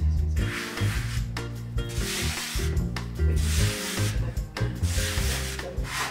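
A hand rubbing and dragging soft chestnut-flour dough across a floured wooden pastry board while shaping trofie, about four rubbing strokes a little over a second apart, over background music.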